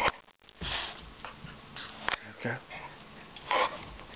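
Golden retriever sniffing and breathing hard close to the microphone, in several short noisy bursts.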